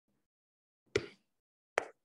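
Two short, sharp clicks a little under a second apart, with quiet between them.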